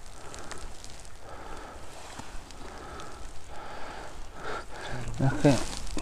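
Irregular crackling and rustling of dry grass and pine needles as a hand and a small folding knife work at the base of a mushroom on the forest floor. A voice comes in near the end.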